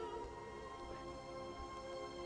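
Orchestra of an operatic score playing soft, sustained held chords as a sung note dies away at the very start.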